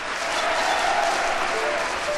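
Live concert audience applauding, a steady even clapping between the announcer's introductions of the band, as pressed on a live vinyl record.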